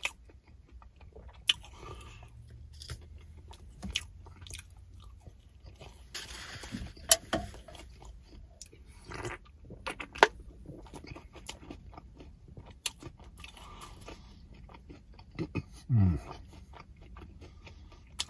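Close-miked chewing and mouth sounds of a man eating a hot pastry pie, quiet and scattered with small crunches and clicks, and a sip from a drink can about ten seconds in. A short hummed 'mm' comes near the end.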